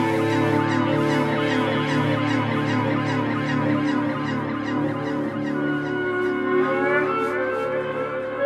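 Live rock band playing: electric guitar and keyboard holding droning tones over drums, with a steady cymbal ticking about two or three times a second. In the second half a higher, sliding tone comes in.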